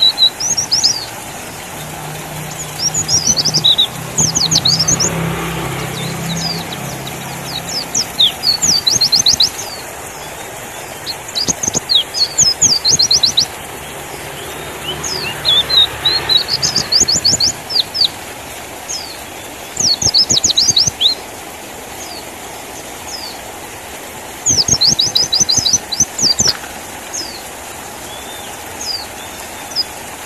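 White-eye (pleci) singing in quick bursts of high, rapid chirping notes. Each burst lasts a second or two, and they come every few seconds.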